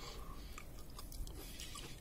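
Faint chewing of a soft, ripe Conference pear.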